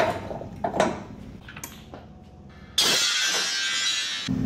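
Short metallic clicks and knocks of hand tools and suspension parts during a Jeep suspension teardown. A little before three seconds in, a loud, even hiss starts abruptly and runs for about a second and a half.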